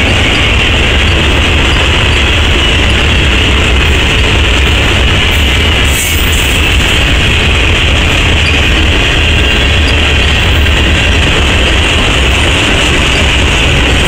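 Freight cars of a long freight train rolling past close by: a loud, steady rumble of steel wheels on rail, with a brief sharp click about six seconds in.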